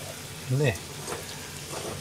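Okonomiyaki of cabbage and egg sizzling steadily in oil in a frying pan.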